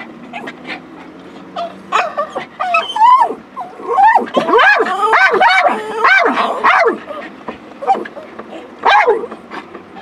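Whining and yelping calls that rise and fall in pitch, a rapid run of them from about two seconds in to about seven seconds, then one more near the end, over a low steady background noise.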